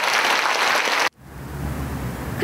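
Concert-hall audience applauding, cut off abruptly about a second in, then a quieter low hum.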